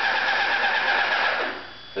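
Airless paint spray gun spraying paint onto a wall: a steady hiss that cuts off about one and a half seconds in.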